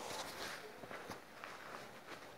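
Faint rustling and soft knocks of denim jeans and a paper insert being handled and turned over.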